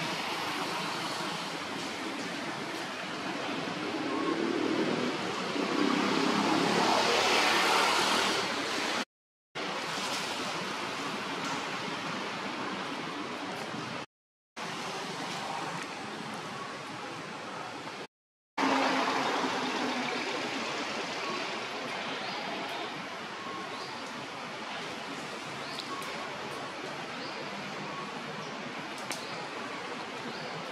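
Steady outdoor rushing noise, like running water or wind through foliage, swelling for a few seconds and cut off three times by brief total silences.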